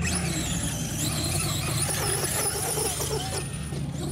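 Remote-control car's motor whining at a high pitch, the whine wavering up and down with the throttle and stopping shortly before the end, over a steady low hum.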